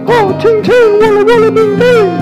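A woman's voice babbling quick wordless syllables that leap and swoop in pitch like a yodel, a comic imitation of speaking in tongues, over steady held chords from the backing instruments.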